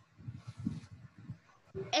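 Faint, irregular low background noise from open microphones on a video call, then a child's voice starting loudly near the end.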